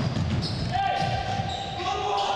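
Basketball game on a wooden gym court: the ball bouncing and players' footfalls make irregular low thuds. A steady held tone starts about two-thirds of a second in and carries on.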